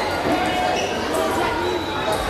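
Table tennis ball clicking sharply off the table and bats a few times, over steady chatter of voices in a large, echoing hall.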